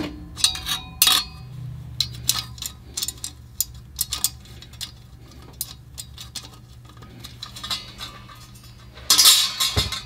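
Light metal clinks and taps as a roller-lifter hold-down bracket is set down and shifted against the lifter bores of a V8 engine block. A louder burst of scraping and rattling comes about nine seconds in.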